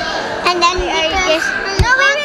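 A young child's high voice calling out in short sounds that slide up and down in pitch, with a sharp thump near the end.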